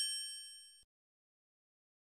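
A single bright ding sound effect, a chime with several high overtones, struck once and fading away within the first second.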